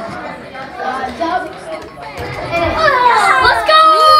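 Children's voices: low talk at first, then about three seconds in, loud, high-pitched excited shouting and shrieking, as children cheer.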